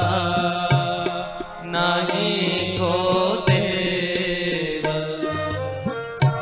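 Kirtan music: harmoniums playing a steady, sustained melody, punctuated by scattered hand-drum strokes.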